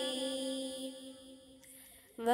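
A single voice holding a long chanted note at the end of a recited Arabic phrase, steady in pitch and fading away over the first second and a half, leaving only a faint hush near the end.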